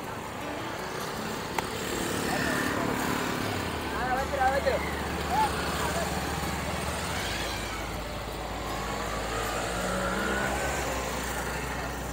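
A motorcycle engine running slowly close by, a steady low hum from about three seconds in until near the end, with a few brief voices of people nearby.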